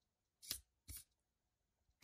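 Small hobby servo driving a 3D-printed rack-and-pinion pin into paper: two short sharp clicks about half a second and one second in, each a pin stroke piercing a braille dot.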